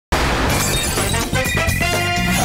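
Theme music starting abruptly, with a shattering crash mixed in at the start.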